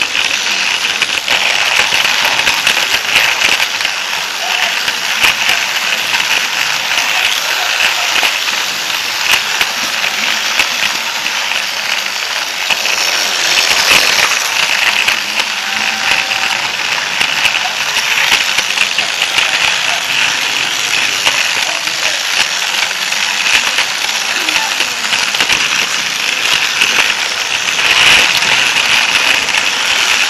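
Toy train running on plastic track with a camera riding on it: a steady, loud whirr and rapid rattle of the small motor, gears and wheels.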